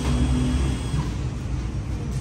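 Steady low rumble of running machinery, with a faint hum that fades out within the first second.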